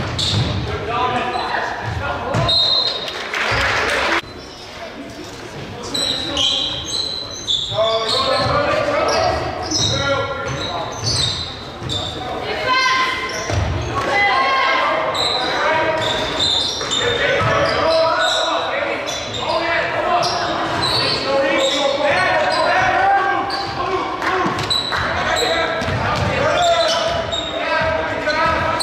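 Live basketball game sounds in a large gym: a basketball bouncing on the hardwood court, short high sneaker squeaks, and players and spectators shouting and talking, echoing in the hall.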